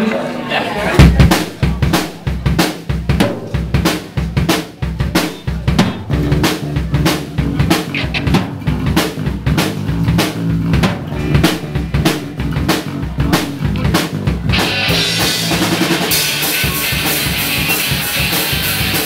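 Live rock band playing a punk-ska song intro led by a Tama drum kit, with bass drum and snare hits in a busy rhythm and electric guitars under them. About fourteen and a half seconds in, the sound thickens suddenly as the full band comes in loud and dense.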